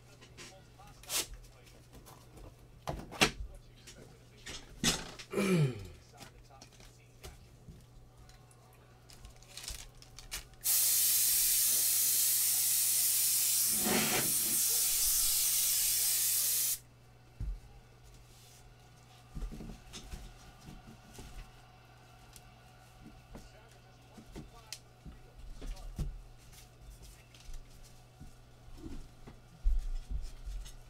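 A loud, steady hiss lasting about six seconds, starting and stopping abruptly, among scattered short clicks and knocks, over a steady low hum.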